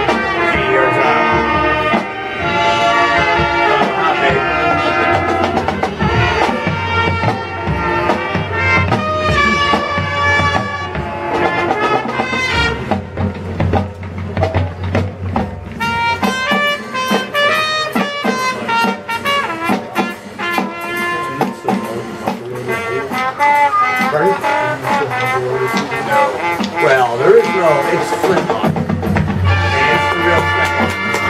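Marching band playing a jazz arrangement: brass section with drum and percussion strokes throughout, thinning briefly about halfway through before filling out again.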